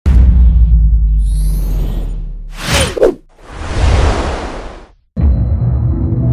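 Logo-intro sound design: a deep bass hit that fades away, a high shimmer, then swishing whooshes as the graphics fly past. It cuts out briefly just after five seconds and comes back with a sudden hit and a musical sting.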